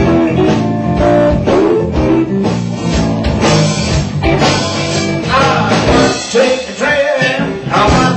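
A live blues band playing: electric guitar over bass guitar and a drum kit, with the drums keeping a steady beat.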